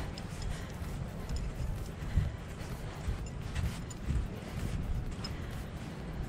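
Wind rumbling and buffeting on the microphone in gusts, strongest about two and four seconds in, with faint footsteps on wet grass.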